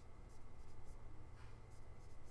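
Faint scratches and taps of a stylus writing numbers on a tablet screen, in several short strokes over a steady low hum.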